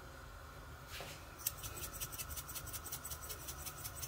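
Salt shaken from a shaker onto onions in a frying pan: a fast, even rattle of small ticks, about seven a second, starting about a second and a half in.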